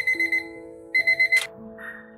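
Digital kitchen timer alarm: two groups of four rapid, high beeps about a second apart, the signal that the 15-minute countdown has run out. A sharp click follows right after the second group.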